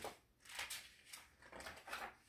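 Paper pages of a picture book rustling as a hand lifts and turns a page, in several short soft scrapes.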